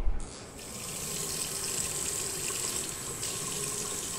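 Water running steadily from a sink tap, building up within the first second and then holding as an even rush.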